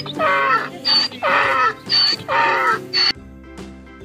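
Donkey braying: a run of hee-haws, about one a second, each a short high squeal followed by a falling honk, cutting off suddenly a little after three seconds. Soft background music underneath.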